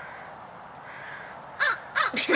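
Crow cawing in the trees: two faint caws, then a loud harsh caw near the end.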